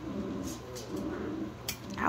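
A seven-week-old puppy giving soft, low whines, with a couple of small clicks.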